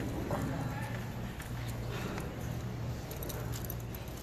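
Hall ambience with a steady low electrical hum, faint voices in the first moment and a few short, light clicks and taps.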